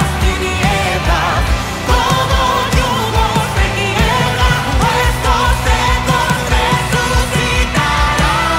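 Live worship band playing a Spanish-language song: a lead vocal sung over drums, bass, electric guitars and keyboards, with a steady beat.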